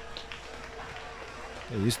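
Quiet, steady background noise with a faint constant hum, then a man's voice near the end.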